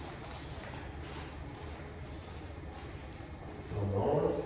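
Quiet footsteps and a dog's claws tapping on a hard floor as a person and a poodle walk on leash, with a few faint ticks over a low, steady room hum.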